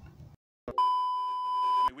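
A single steady electronic beep, one pure high tone lasting a little over a second, that starts and stops abruptly with a click at each end after a brief gap of dead silence.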